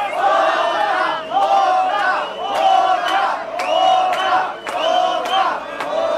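Concert crowd chanting in unison, the same shouted call repeated about once a second, with sharp claps among the voices.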